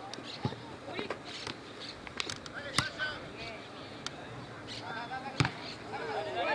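A football being kicked and bouncing during play: a scattering of sharp thuds, the loudest one near the end, with players' distant shouts in between.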